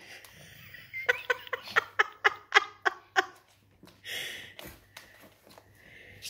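A person laughing: a quick run of about nine short 'ha' bursts over two seconds, followed about a second later by a brief rustle.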